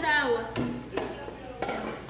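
A voice trailing off, then a few light clicks and knocks of kitchenware, spaced about half a second apart.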